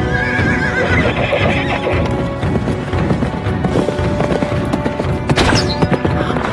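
A horse neighing with a wavering call in the first couple of seconds, then galloping hooves, over loud music. A short, sharp rush of noise comes near the end.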